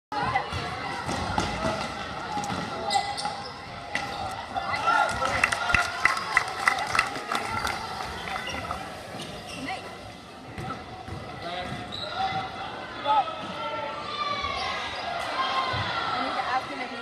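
Basketball dribbled on a hardwood gym floor, a run of sharp bounces about three a second in the middle, with sneakers squeaking near the end and spectators' voices throughout.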